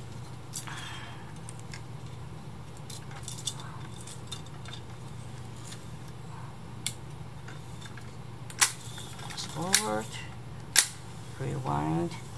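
Scattered small metallic clicks and clinks from hands working on a reel-to-reel deck's transport, where the rewind brake's adjusting nut has just been twisted to ease its pressure, over a steady low hum. A few louder, sharper clicks come in the last few seconds.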